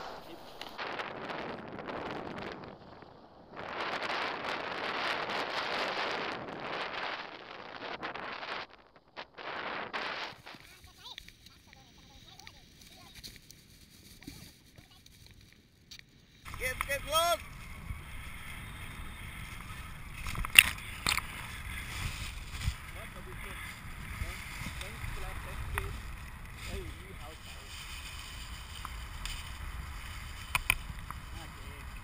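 Wind on the camera microphone of a tandem paraglider. There is a rushing hiss that comes and goes during the take-off in the first ten seconds, then a quieter stretch. From about halfway there is a steady low rumble of airflow in flight, with a few sharp clicks.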